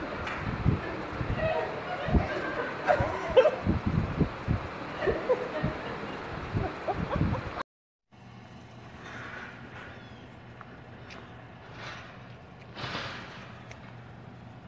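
Audience noise in a hall: scattered voices and laughs with many short, irregular low knocks and thumps. About seven and a half seconds in it cuts off abruptly. What follows is a faint background with a steady low hum and a few soft rustles.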